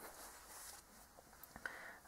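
Near silence: faint room tone, with one faint brief noise about one and a half seconds in.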